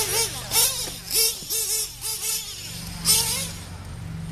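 Radio-controlled racing truggies' motors revving up and down as they race round a dirt track, a quick run of short rising-and-falling whines with another burst about three seconds in, over a steady low hum.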